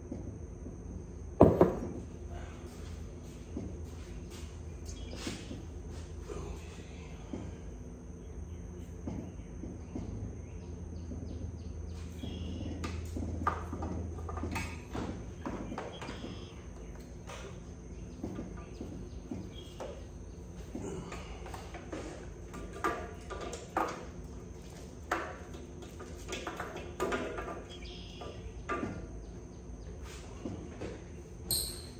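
Scattered clicks and knocks of parts being handled as a carburetor is test-fitted onto a dirt bike's stock intake manifold, with one sharp knock about a second and a half in and more frequent clicks in the second half.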